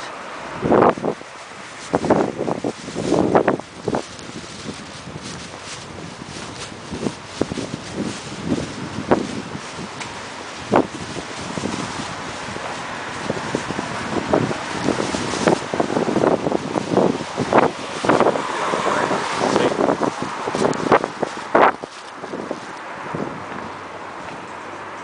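Street ambience recorded while walking: wind buffeting the microphone, with passing car traffic swelling and fading and irregular short knocks and bumps.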